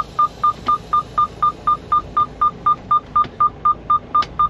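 Freightliner truck's reverse warning beeper, a steady high-pitched beep repeating about four times a second with reverse gear selected. A faint low hum from the running engine sits underneath.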